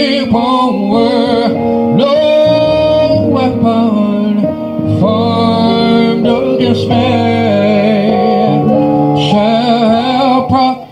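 A man singing a gospel song into a handheld microphone, with sustained, wavering notes over instrumental backing music.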